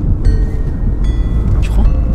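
Car cabin noise while driving: a steady low engine and road rumble inside a Renault. A short run of high, steady electronic tones sounds during the first second.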